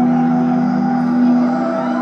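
A sustained chord of steady electronic tones played through the concert PA, starting abruptly and held evenly, like a synth pad opening the band's next song.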